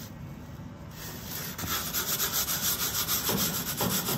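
Aluminium pizza peel scraping over a hot pizza stone as a pizza is turned and slid back into a grill-top pizza oven. It is a rapid rasping scrape that grows louder about a second and a half in.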